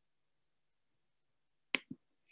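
Near silence, then two quick sharp clicks close together near the end.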